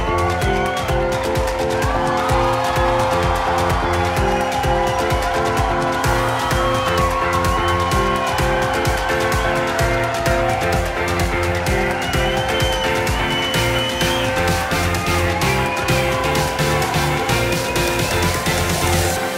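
Live Mexican banda brass band playing: trumpets and trombones over sousaphone bass and snare drum, with a steady pulsing beat.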